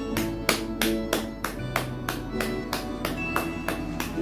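Hands clapping in a steady rhythm, about three claps a second, over instrumental music.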